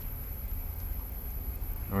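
Wind rumbling steadily on the microphone: a low, even rumble.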